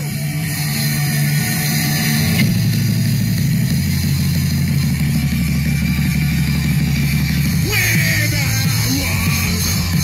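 Live punk rock band playing loud, heavy guitar and bass with drums, the sound thickening about two and a half seconds in. The singer yells into the microphone near the end.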